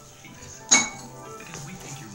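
A single sharp clink of a hard object, about two-thirds of a second in, over faint background music.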